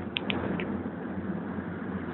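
Steady running and road rumble heard inside a city bus, with three short high ticks or rattles in the first half-second.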